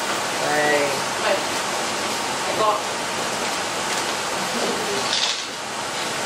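Carbonated gimlet poured from a Perlini shaker through a fine strainer into a cocktail glass: a steady liquid trickle over room hiss, with faint voices now and then.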